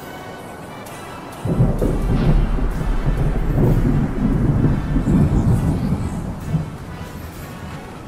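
A thunder rumble sound effect that starts suddenly about a second and a half in, rolls on deep and loud for about five seconds, and fades out, over a quiet music bed.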